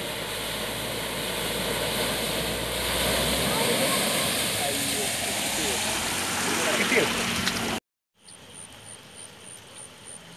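Small car driving through floodwater: a steady rush of water spray and tyre noise over the engine's low hum. It cuts off abruptly about eight seconds in, leaving a much quieter stretch with a faint, high, regular ticking.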